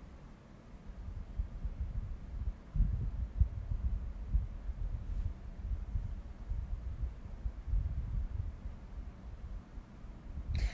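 Low, irregular rumbling on a phone's microphone, picking up about a second in and stronger from about three seconds on.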